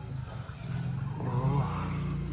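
Engine running with a steady low hum that grows louder about half a second in.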